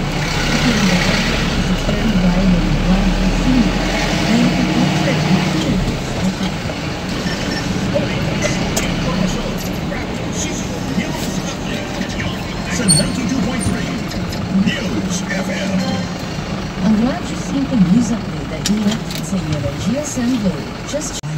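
People talking over the steady low hum of a van's engine running, heard from inside the cab; a deep rumble under it dies away about five seconds in.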